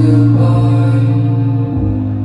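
Live concert music played loud through the venue's sound system: long sustained chords over a deep held bass note, the chord changing twice.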